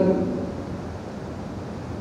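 Steady background hiss of room noise through the recording, in a pause in a man's talk; the last syllable of his speech trails off at the very start.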